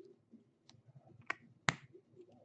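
A faint click, then two sharp clicks less than half a second apart near the end, from hands handling small objects at the table.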